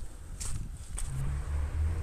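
Outdoor ambience: a steady low rumble with a few faint footsteps of someone walking on gravel.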